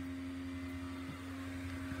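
Built-in electric blower fan of a Gemmy inflatable Christmas decoration running steadily, keeping it inflated: an even hum.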